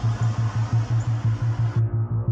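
Background music: a low bass note pulsing evenly about seven times a second. A layer of hiss beneath it cuts off suddenly near the end while the pulsing continues.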